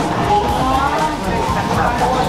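Background music with guitar, over the chatter of people in a busy restaurant.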